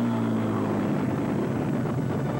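P-51 Mustang fighter's piston engine droning as it flies low past, its pitch falling slowly.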